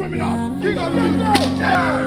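A single sharp whip crack about a second and a half in, over continuous background music with voices.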